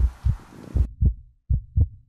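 Heartbeat sound effect: low paired lub-dub thumps, one pair about every three quarters of a second. A faint hiss underneath cuts off suddenly about a second in.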